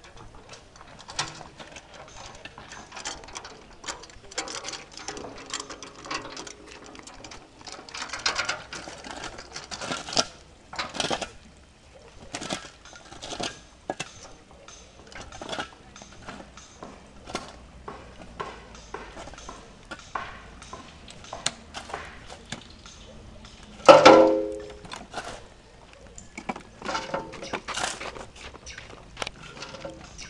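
Shovels scraping and scooping soil and stones, with irregular clatters and clanks against a steel wheelbarrow tray. One much louder ringing clang comes near the end.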